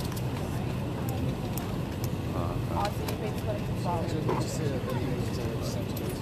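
Steady low hum inside an airliner cabin, with passengers talking indistinctly in the background.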